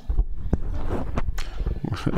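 A microphone being handled: a sudden low thump, then a few sharp clicks and bumps, with indistinct voices in the room.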